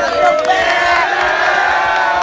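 A crowd of teenage football players cheering and yelling together, many voices overlapping in long held shouts.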